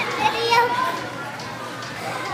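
Children playing and calling out, with one child's high voice loudest close by in the first second over a steady background of other children's voices.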